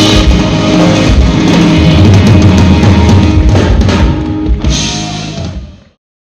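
Live rock band of drum kit, electric bass and electric guitar playing loud, heavy on the drums, then dropping away about four seconds in and fading out to silence just before the end.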